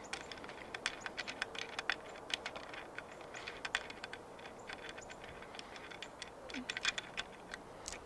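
Light, irregular clicking and ticking, several clicks a second, as the pan handle's threaded mount on a video tripod's fluid head is unscrewed by hand.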